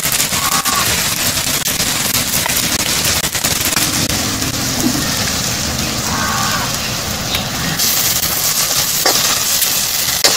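Chopped onions and green chillies frying in hot oil in a large iron kadai, sizzling and crackling steadily, a little brighter near the end.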